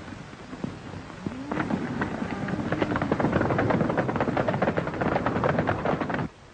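Several horses galloping: a rapid clatter of hoofbeats that grows louder from about a second and a half in, with rising and falling calls over it.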